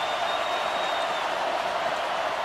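Steady crowd noise from a full football stadium, an even wash of many voices with no single shout or clap standing out.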